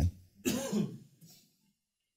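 A person clears their throat once, briefly, about half a second in.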